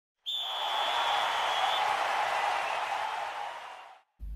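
Intro sound effect for an animated logo: a sudden rush of noise with a thin steady high tone in its first second and a half, fading out gradually over the next two seconds.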